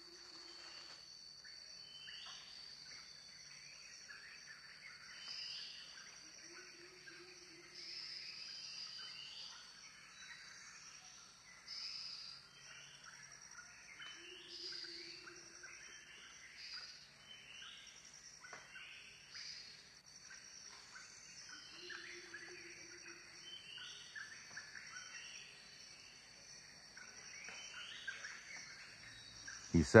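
Tropical rainforest ambience. A steady high insect drone runs under many short, repeated bird calls, and a low held note sounds four times, about every seven or eight seconds.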